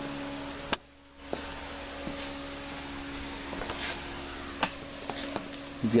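Electric shop fan running with a steady hum, with a few light clicks and taps of hands handling motorcycle parts. The sound drops out briefly just under a second in.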